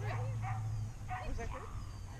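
A dog yipping and whining, with voices mixed in, over a low steady hum that stops about a second in.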